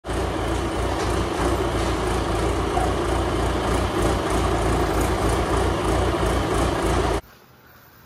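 John Deere loader tractor's engine running steadily with an even low pulse, cutting off suddenly near the end.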